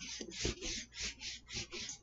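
A whiteboard being erased: quick back-and-forth rubbing strokes across the board, about five a second, fairly quiet.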